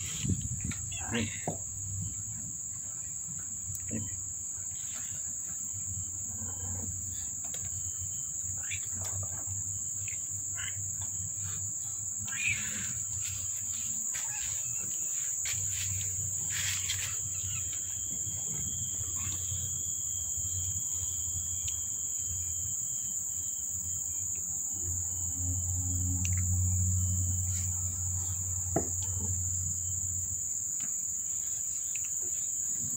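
Insects chirring in one steady, high-pitched, unbroken drone. Scattered soft clicks and rustles sound over it, and a low rumble comes and goes, loudest near the end.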